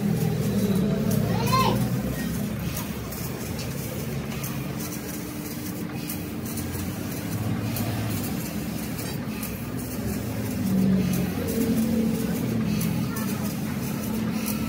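Indistinct voices over the steady hum and hiss of a CNC sheet-metal cutting machine at work, with a steady tone setting in a few seconds in.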